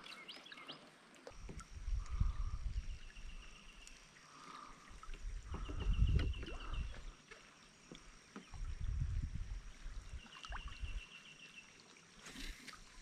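Kayak on a river: water swishing around the hull and paddle in three low surges a few seconds apart. Short runs of faint, rapid ticking come three times.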